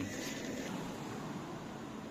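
Sliced pork frying in hot oil in a stainless steel pot on a portable gas stove: a steady, quiet sizzle.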